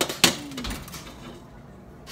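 Metal baking sheet clanking as it is pulled from the oven with an oven mitt and set down: two sharp clanks close together at the start, the second the loudest, with a brief ring and a dull thud just after.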